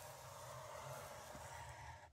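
Scoring stylus drawn along the groove of a paper scoring board, pressing a fold line into double-sided scrapbook paper: a faint, steady scrape.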